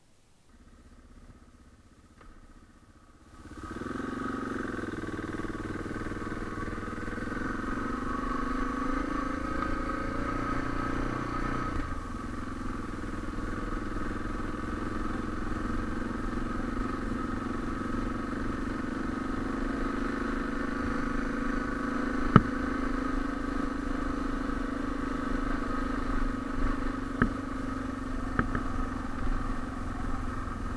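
Suzuki DR650's single-cylinder four-stroke engine running under way on a gravel track. It cuts in sharply after a few faint seconds, climbs in pitch as the bike gathers speed, dips briefly about twelve seconds in, then drones steadily. A few sharp knocks come in the second half.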